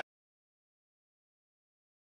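Complete silence: the sound track drops out abruptly and stays muted.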